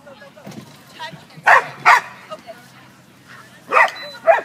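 Dog barking during an agility run: two sharp barks in quick succession about a second and a half in, then another near the end.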